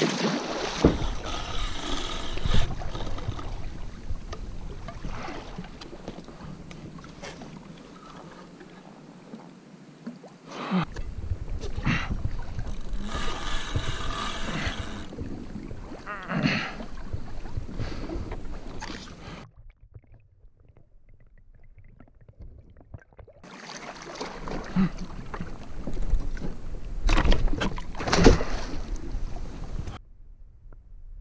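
Water splashing around a kayak as a hooked shark thrashes at the surface, with wind on the microphone and sharp knocks now and then. It goes quiet for a few seconds past the middle.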